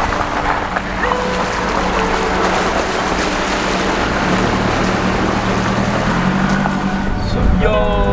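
Four-wheel-drive vehicle fording a flooded dirt road: a steady rush and splash of water against the tyres and body, over the engine running. Near the end the water noise gives way to music.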